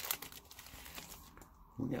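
Foil trading-card pack wrapper crinkling briefly as it is torn open, fading within a moment to faint rustling of the cards being handled.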